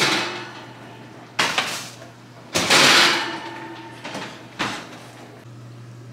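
Kitchen clatter of cookware being handled: a string of knocks and clanks, five in all, the loudest a longer rattle about two and a half seconds in, over a steady low hum.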